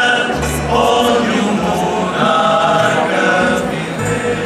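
Academic tuna performing: a chorus of male voices singing together, accompanied by mandolins, guitars and a double bass whose low notes change about once a second.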